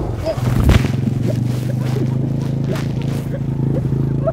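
Dirt bike going down with two riders aboard: a thump as it hits the ground under a second in, then its engine idling steadily on its side.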